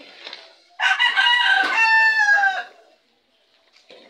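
A rooster crowing once: one loud call about two seconds long, its last drawn-out note falling in pitch.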